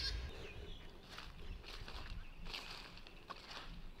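Faint outdoor garden ambience, with a few soft rustles scattered through it and faint bird calls.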